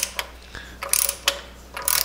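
Ratchet of a torque wrench clicking as the handle is swung back and forth, tightening transmission oil pan bolts: three short runs of clicks about a second apart.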